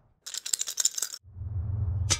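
Eight plastic two-colour counters rattling as they are shaken together, a fast run of clicks for about a second. After that there is a low rumble.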